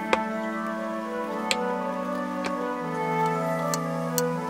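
Instrumental background music with held notes, over four sharp taps of a knife blade coming down onto a wooden cutting board as a loaf cake is sliced; the first tap, right at the start, is the loudest.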